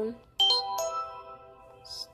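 Phone alert tone going off: a quick run of bright bell-like notes that ring together and fade, starting about half a second in. It is one of a string of repeated alerts, which she puts down to notifications from the many channels she subscribes to.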